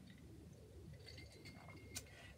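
Near silence: room tone, with a faint click near the end.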